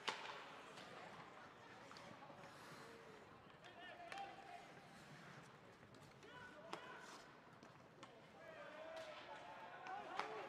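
Faint ice-rink sound during play: a few sharp clacks of hockey sticks and puck, spaced irregularly, with distant shouts from the ice.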